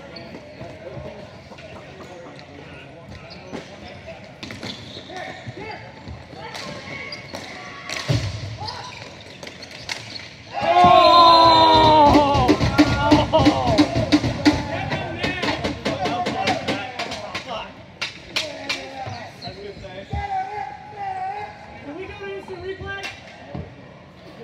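Ball hockey play on an indoor rink: repeated sharp clacks of sticks and the plastic ball, with a dull thud about eight seconds in. About ten seconds in, a sudden burst of loud shouting and cheering from players and spectators, the loudest sound here, fading over several seconds.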